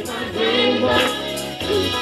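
Gospel praise team, several singers on microphones, singing together in a church hall.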